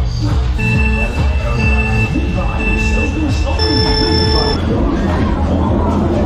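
Dodgem ride's electronic buzzer sounding, a pulsing tone repeated three times, then a different, higher tone for about a second, the signal that the ride is about to start. Loud fairground music with a heavy bass runs underneath.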